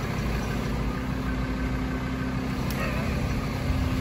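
A car driving on a wet road: steady engine hum with hiss from the tyres and road.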